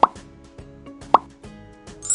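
Two short cartoon 'plop' pop sound effects, about a second apart, over quiet background music with a steady beat.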